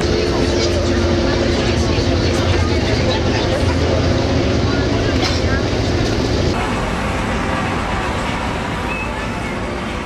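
Steady engine and road noise heard from inside a moving coach bus, with a low drone that changes abruptly about six and a half seconds in.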